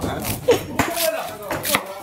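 Kitchen knife cutting through stalks of brède lastron greens on a plastic cutting board: a string of irregular sharp cuts.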